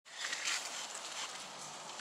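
Outdoor town background noise, a steady hiss, with a few light clicks or taps in the first half second.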